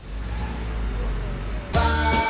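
A whoosh sound effect for an animated logo, a steady noisy swell with a deep rumble underneath, cut off near the end as upbeat jingle music starts.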